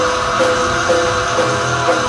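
Heavy metal band playing live: electric guitars and bass over drums, a riff repeating about twice a second, with the singer shouting into the microphone.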